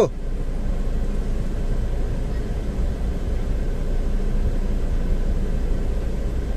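Steady low rumble inside a car's cabin, as of the car's engine idling.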